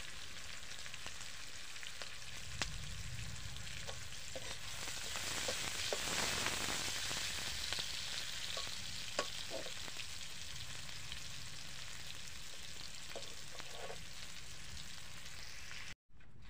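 Sliced onions and red chillies sizzling in hot oil in an aluminium wok, stirred with a metal ladle that gives an occasional tap or scrape against the pan. The sizzle swells for a few seconds in the middle, then settles back to a steady hiss.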